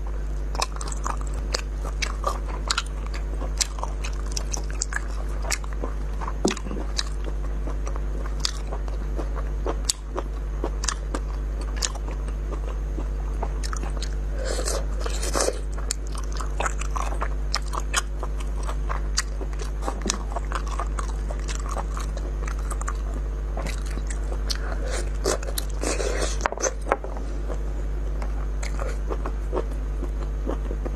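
Close-miked eating: biting, gnawing and chewing spicy braised meat on the bone, with many small crunches and wet clicks at an irregular pace, over a steady low electrical hum.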